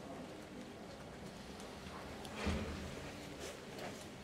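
Quiet room tone at a press-conference table, with one faint low bump about halfway through.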